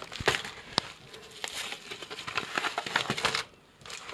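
Padded mailing envelopes and plastic packaging crinkling and crackling as parcels are cut open with scissors and handled, with a run of sharp crackles.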